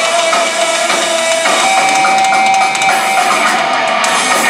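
Live rock band playing loud: distorted electric guitar carrying a lead line with long held notes over drums.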